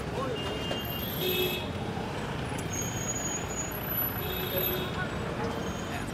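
Steady road traffic noise with short vehicle horn toots, about a second in and again a little past four seconds.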